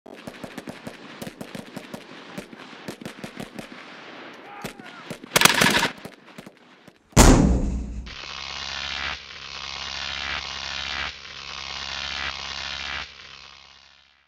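Produced sound effects: a few seconds of rapid gunfire-like cracks, a short loud burst, then one heavy impact. It is followed by a steady pitched drone that swells in about one-second pulses and fades out.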